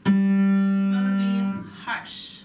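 Upright piano struck forte once and held for about a second and a half before the sound is released. It is played by bringing the hand to the keys without first lifting the elbow, the approach she says leaves the energy stuck in the muscles.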